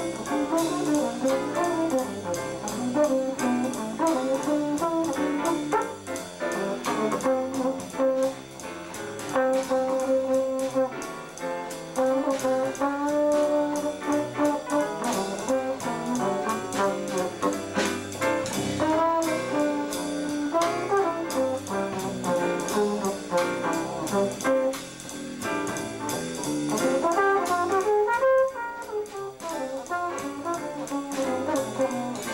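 Live small-group jazz: a brass lead line played over piano, walking bass and drums keeping a steady swing beat.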